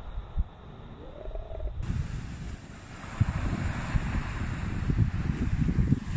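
Wind buffeting a phone microphone: an uneven low rumble that grows louder about halfway through, with a steady hiss above it.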